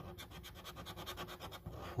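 A coin scraping the silver latex coating off a paper scratchcard in quick, repeated short strokes, about a dozen a second, with a brief pause near the end.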